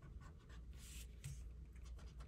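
Faint scratching of a marker pen colouring in on a paper sheet, briefly stronger about a second in.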